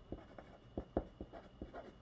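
Pen writing by hand on a sheet of paper on a tabletop: a quick run of short, uneven scratches and taps of the pen tip, the strongest about a second in.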